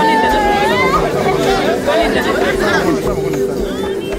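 Several people chatting and talking over one another, with background music's steady bass beat and a held tone underneath.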